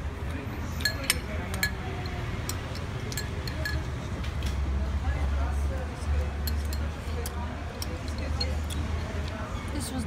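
Metal spoon clinking and scraping against a ceramic soup bowl, a dozen or so sharp clinks scattered through, as the spoon scoops from a nearly empty bowl. A steady low rumble runs underneath.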